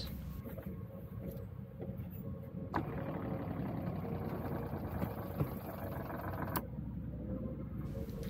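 Seaflo diaphragm water pump running quietly under pressure, a steady low hum. A click about three seconds in and another near the end bracket a stretch of fuller, noisier running.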